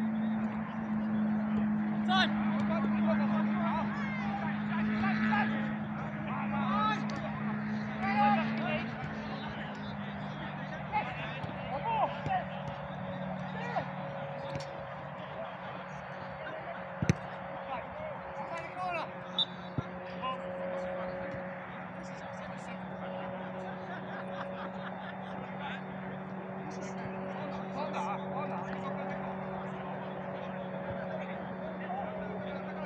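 Players' shouts and calls carrying across an outdoor football pitch, louder in the first third, over a steady low hum. A few sharp knocks stand out, the clearest about halfway through.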